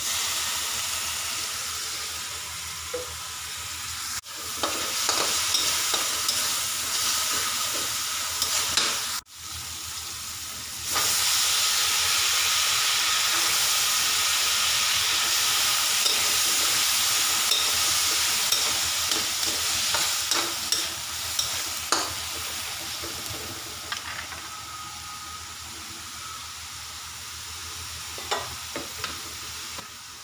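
Shrimp, garlic, onion and tomato sizzling in hot oil in a steel wok while a metal spatula stirs and scrapes the pan. The sizzle grows louder about eleven seconds in, and kangkong (water spinach) stems are stir-fried in it, easing off toward the end.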